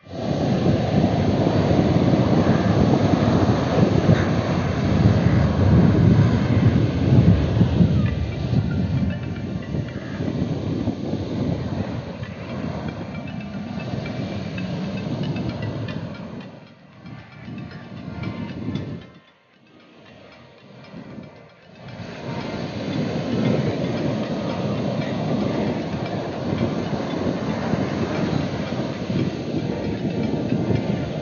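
Sea surf breaking and washing up a sandy beach, a dense, loud rush of waves. It fades almost to nothing for a few seconds about two-thirds of the way through, then comes back as strong.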